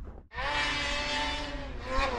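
A racing snowmobile's engine running at high revs: a steady high-pitched engine note that cuts in abruptly a moment in and rises slightly near the end.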